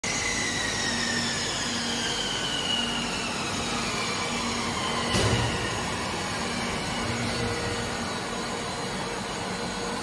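Can body side seam welding machine for 5-litre cans running with a steady mechanical din. A low hum switches on and off in a regular cycle, faint high whines fall slowly in pitch over the first few seconds, and a single knock comes a little past halfway.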